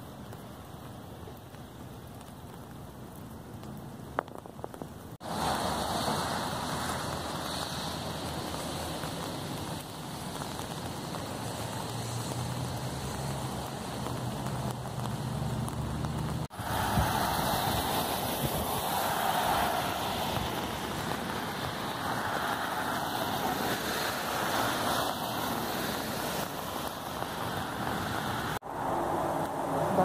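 Steady rain hissing on wet pavement, with a faint low hum underneath. The sound jumps abruptly in level about five seconds in and twice more later.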